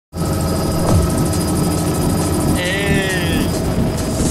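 Helicopter running steadily, its engine and rotor making a constant loud noise with steady whining tones. A brief high voice calls out in the middle.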